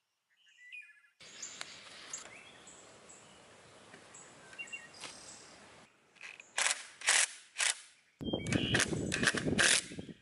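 Cordless drill driving screws into a wooden fence post: three short bursts of the motor, then a longer run of about two seconds near the end. Birds chirp faintly in the first half.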